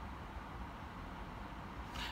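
Quiet, steady low rumble of a car engine idling, heard from inside the cabin.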